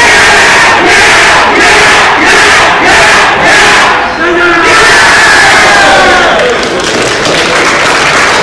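A team of youth baseball players shouting a team chant together in unison from a crouched huddle, very loud, in short rhythmic phrases with brief breaks between them, then a longer held shout in the second half.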